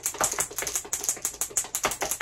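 A marble rattling and clicking inside a small glass baby food jar of whipping cream that is shaken fast by hand, a quick steady run of clicks. This is the shaking that churns the cream into butter, with the marble agitating the cream.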